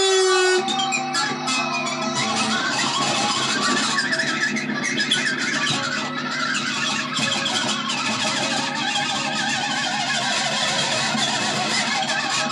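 Jazzmaster-style electric guitar strummed continuously. A held note rings at the start, then gives way to a dense, loud wash of chords.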